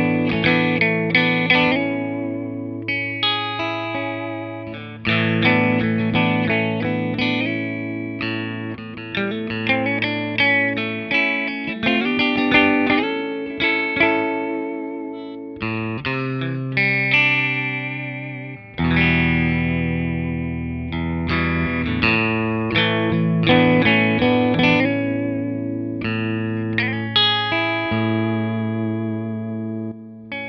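Fender electric guitar played through a Hamstead Ascent clean boost pedal into a Hamstead Artist 60 amp in 60-watt mode: strummed chords and lead lines at a boosted, loud volume. The amp stays clean with no breakup, just louder.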